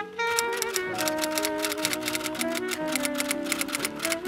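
Rapid typewriter key clicks, a typing sound effect, over instrumental background music with sustained notes.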